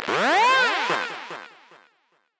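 Electronic synthesizer sound effect: a cluster of overlapping tones that each swoop up and back down in pitch, loud at first and fading out over about two seconds.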